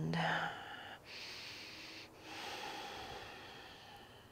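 A woman breathing deeply through a yoga stretch: two long, hissing breaths, one about a second in and the next right after a short pause, each lasting a second and a half or more.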